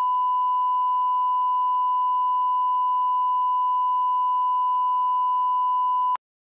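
Steady 1 kHz sine-wave test tone, the line-up reference tone that accompanies colour bars.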